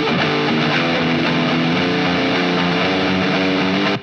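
Playback of a distorted electric guitar track through GarageBand's stock Classic Drive preset, whose vintage drive and rock distortion are split between the left and right channels. The guitar sustains steadily at an even level and cuts off abruptly at the end.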